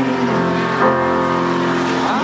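Live folk-rock band playing between sung lines: guitar over steady, sustained chords.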